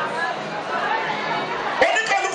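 A man speaking in Yoruba into a microphone, his voice amplified over a stage PA system. A brief knock comes near the end.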